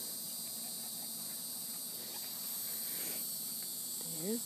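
Steady high-pitched insect chorus, like crickets, with no break.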